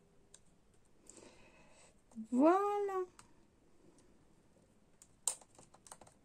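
A single short voiced call about halfway through, under a second long, rising in pitch and then holding. It is followed near the end by a few small clicks of small objects being handled.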